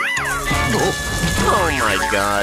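Cartoon soundtrack: background music with a steady high tone, under several gliding, voice-like cries that swoop up and down in pitch. A low rumble sets in just after the start.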